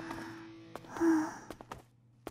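A soft sigh about a second in, over the fading tail of background music, followed by a few faint clicks.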